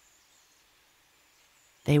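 Near silence with a faint hiss during a pause in storytelling narration, then a narrator's voice begins speaking just before the end.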